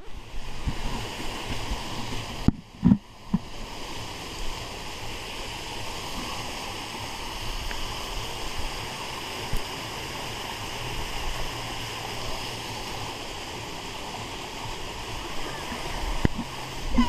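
Water rushing steadily down a water slide's chute, a continuous splashing flow, with a brief dip and a couple of soft bumps about three seconds in.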